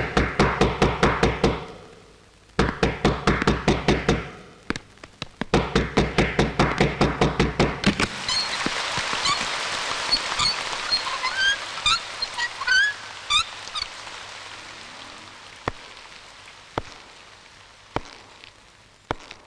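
Rapid knocking on a wooden door, about six knocks a second, in three bouts with short pauses between them. After that comes a steady hiss with short high chirps, and a few single taps near the end.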